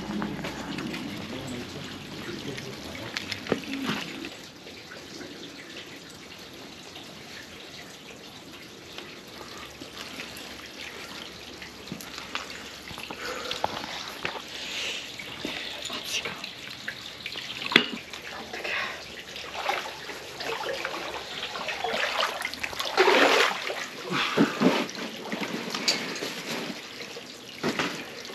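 Hot spring water running steadily into an outdoor stone footbath, with louder splashes and knocks in the second half as bare feet go into the water.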